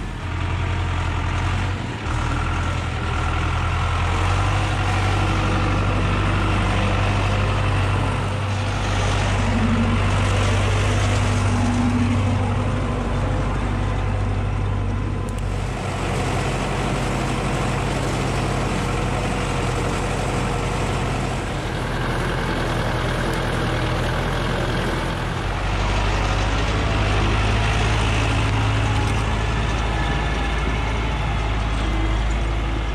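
MTZ Belarus 820 tractor's four-cylinder diesel engine running hard under heavy load as the tractor works through deep forest mud: a steady, deep drone that shifts abruptly in tone a few times.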